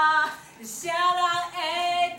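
Young women singing unaccompanied in Taiwanese Hokkien: a long held note ends just after the start, a short breath, then the singing comes back with long held notes.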